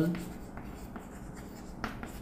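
Chalk writing on a chalkboard: faint scratching as a word is written, with one sharper tap of the chalk near the end.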